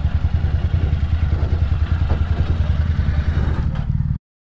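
Motorcycle engine idling at a standstill with a low, pulsing beat.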